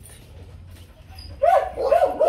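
A dog whining in short, high-pitched cries that start about one and a half seconds in, after a quiet moment.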